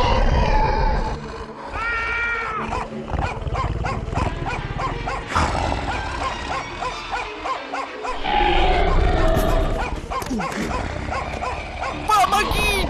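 A cartoon three-headed dragon roaring and growling over background music.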